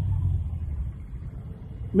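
Low rumble of road traffic, with a passing vehicle loudest at first and fading away.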